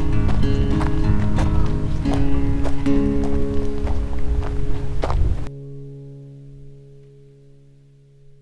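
Background music with held notes and a crisp rhythmic beat, cutting off suddenly about five and a half seconds in and leaving a sustained chord that fades out.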